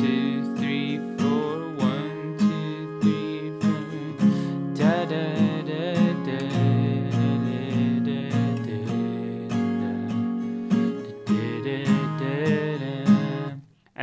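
Steel-string acoustic guitar, capoed at the sixth fret, strummed in a steady rhythm through a G, Em7, C, D chord progression. The playing stops suddenly just before the end.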